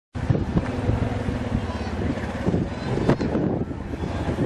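Outdoor street sound: a steady low rumble of wind on the microphone, with indistinct voices mixed in.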